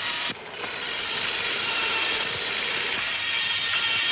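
Soundtrack of an old film: faint music under a steady hiss. The level drops suddenly about a third of a second in, then slowly comes back.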